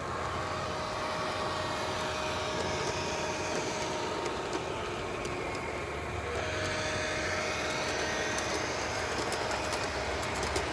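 O gauge model train, diesel locomotives pulling streamlined passenger cars, running steadily past with a constant hum and faint whine of motors and wheels on the track. A few sharp rail clicks come in near the end.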